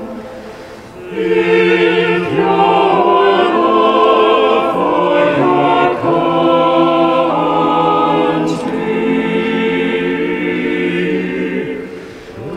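Mixed choir singing a hymn in long, held chords with reverberation. The previous phrase dies away at the start, a new phrase enters about a second in, and it fades near the end.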